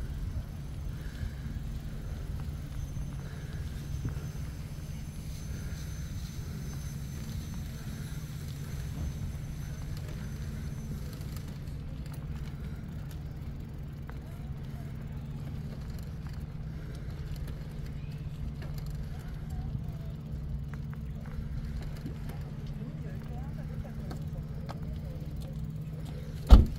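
Steady low rumble of wind and rolling noise from riding a bicycle along a paved path, with a faint steady hum underneath and no distinct events.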